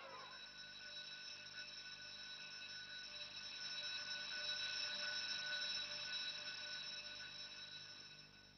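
Faint sustained high ringing drone in a documentary soundtrack: several steady pitches held together, swelling toward the middle and fading near the end.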